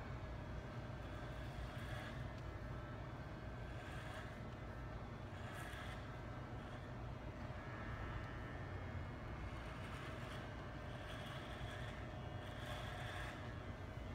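Corded electric hair clippers running with a steady buzz while cutting hair, with brief brighter swishes every few seconds as the blades pass through the hair.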